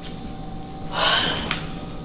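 A woman's sharp, noisy breath, about a second in and lasting about half a second, followed by a faint click.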